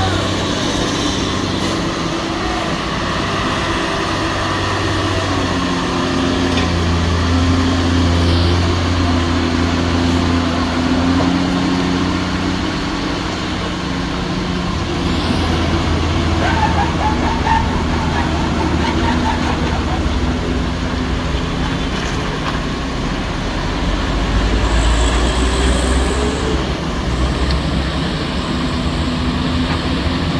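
Heavy truck's diesel engine labouring in low gear as the truck pulls a tanker around a steep hairpin, its engine note steady and low with pitch changes several times as it works through the bend.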